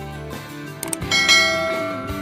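Sound effects of a subscribe-button animation over background music: a short click, then just after a second in a bright bell ding that rings out and slowly fades.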